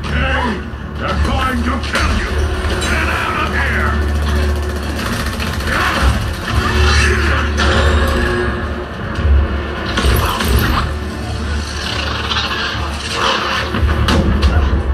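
An action film's soundtrack, with music, dialogue and explosion effects, played back through a Hisense HS218 2.1-channel soundbar and wireless subwoofer and heard in the room, with heavy sustained bass. Surround mode is switched from off to on partway through.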